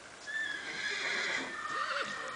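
A young palomino colt whinnying: one long, loud, high call that wavers in pitch near its end.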